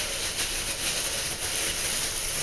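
Plastic-gloved hand rubbing tanning lotion over bare skin: a steady soft swishing hiss with faint strokes in it.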